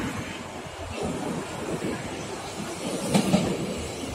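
Tokyo Metro Marunouchi Line train running out of its tunnel and across a bridge, a steady rumble with its wheels clacking over rail joints, loudest in a quick run of clacks about three seconds in.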